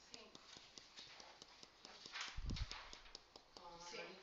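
Faint, irregular clicking and tapping throughout, with a brief rustle and low thump a little over two seconds in and quiet voices in the background.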